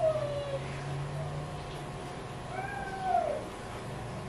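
A domestic cat meows twice: a short falling meow at the start and a longer meow that rises and falls near the end, over a steady low hum.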